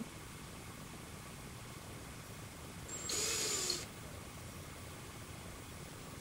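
Cordless drill with a step bit running in one short burst of under a second, about three seconds in, biting into brittle old plastic.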